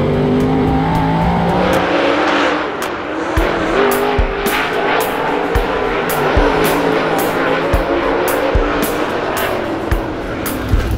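Dirt super late model race car engine running at low, steady revs, heard through the in-car camera. About two seconds in, music with a steady drum beat comes in over the noise of the race car on the track.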